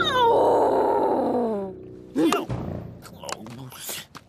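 A cartoon character's long, rough-edged groan falling steadily in pitch, a voiced sound of disappointment, followed about two seconds in by a short sliding vocal sound and then soft scattered clicks.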